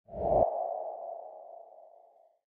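Logo intro sound effect: a short low hit that cuts off after about half a second, with a ping-like ringing tone that fades slowly away.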